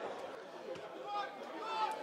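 Faint, distant voices and chatter from spectators and players around a football pitch.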